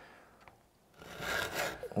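Near silence for about the first second, then a hand file rasping across a chainsaw chain's cutter. The file is held in a guide that also files down the depth gauge in the same stroke.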